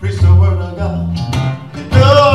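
Acoustic guitar and bass guitar playing a live blues song, with low bass notes under the picked guitar.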